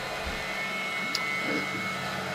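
Steady low background hum with a faint high whine, and one faint click a little past a second in.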